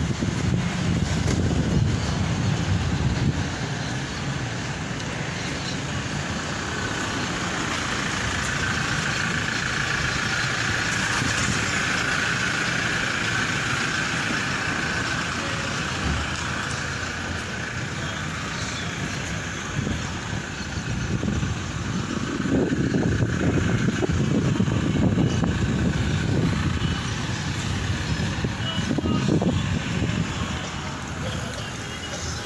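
Road traffic going by: a continuous motor-vehicle rumble that swells heavier in the first few seconds and again for several seconds near the end, with a steady higher hum in the middle.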